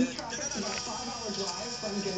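A man's voice from the video being reacted to, quieter than the surrounding talk, with faint background music.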